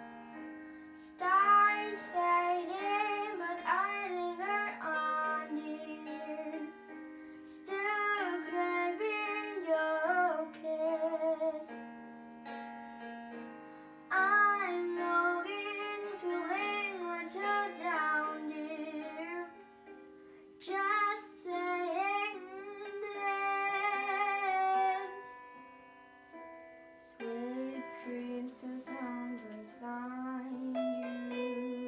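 A young girl sings a slow song in four phrases with short pauses between them. She sings over a recorded backing track with piano that holds steady chords underneath and carries on alone in the gaps.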